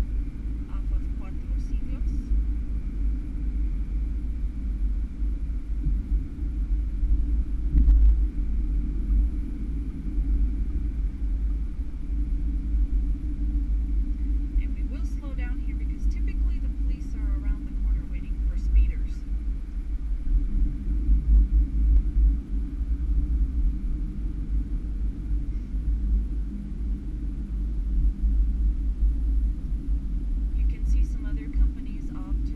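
Steady low road and engine rumble inside a car's cabin as it drives along a street, with faint voices about halfway through.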